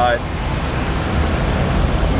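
Steady low rumble of wind buffeting the camera microphone outdoors.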